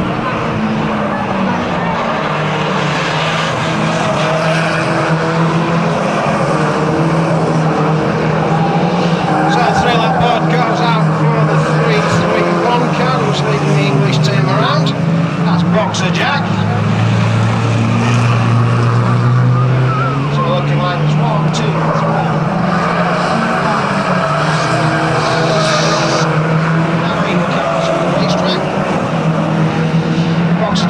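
A pack of banger-racing cars running hard around the track, their engines rising and falling in pitch as they accelerate and lift. A few sharp knocks are heard, typical of cars making contact.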